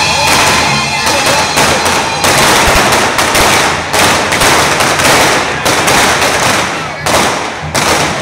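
Correfoc fireworks: a dense, continuous crackle of firecrackers and spark fountains, with frequent sharp bangs. It thins out briefly about seven seconds in.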